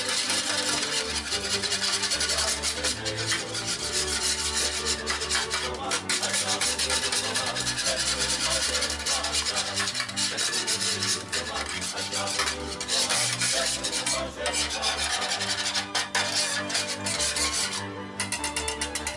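Wire balloon whisk scraping round the bottom and sides of a metal baking pan as it beats a thin sauce, a continuous rasping scrape.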